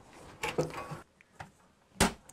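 Faint handling noise: a soft clatter about half a second in and a small click near the middle, then near silence.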